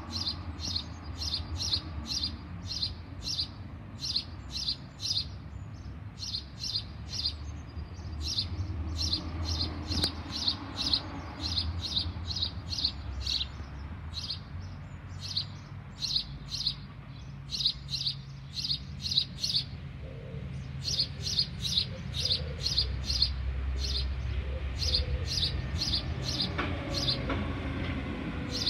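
Fledgling bird giving loud, rapid begging chirps, two or three a second, in bouts with short pauses: a baby bird calling to be fed.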